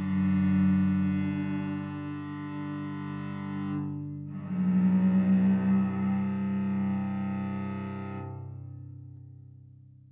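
Cello playing two long bowed notes, each sounding several pitches at once. There is a short break between them, and the second fades away over the last couple of seconds.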